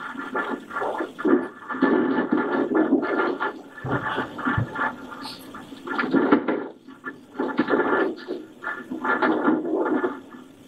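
Muffled, scratchy noise that surges and dips unevenly, from the playback of a police cruiser's dashcam recording of a snowy drive.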